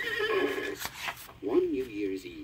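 Recorded horse whinny on a children's book-and-record, the signal to turn the page: a wavering high call that fades out just under a second in, followed by a few short clicks.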